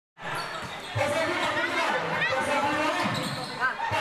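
A basketball being dribbled, bouncing on a hard court floor, under the voices and shouts of players and spectators in a large covered court. Two short squeaks come about midway and near the end.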